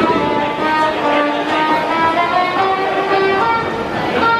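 Music: a melody of held, overlapping notes.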